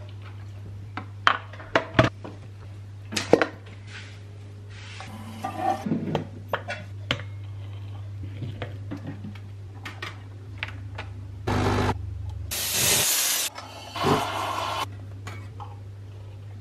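Espresso being made by hand: scattered clicks and knocks of the metal portafilter and tamper on the counter, then several loud bursts of hissing from the espresso machine in the second half, as milk is steamed extra hot and foamy.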